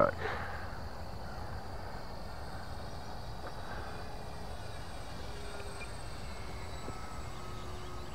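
Distant, faint whine of an RC P-39 Airacobra's electric motor and propeller flying overhead, over a steady outdoor hiss; the whine sinks slightly in pitch over the last few seconds.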